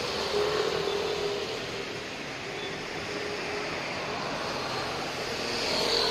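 Steady street traffic noise, with a vehicle's low hum swelling about half a second in and again near the end.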